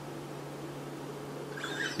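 Quiet steady hum and hiss, then a man's muffled laugh starts behind his hand near the end.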